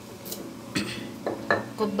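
Wooden pestle pounding a coarse chutney mixture in a stone mortar: a few sharp knocks about half a second apart. A voice starts near the end.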